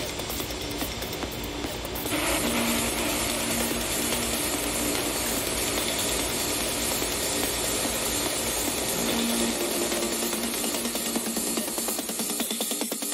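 DJ-mixed electronic dance music in a dense, noisy section. It grows louder and hissier about two seconds in, over a held low tone and a steady low beat.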